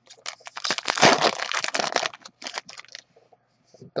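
Foil wrapper of a trading-card pack being torn open and crinkled: a dense crackle for about a second and a half, then a few lighter rustles.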